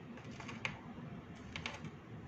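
Faint, irregular typing taps: a light click about half a second in and a quick cluster of clicks near the end.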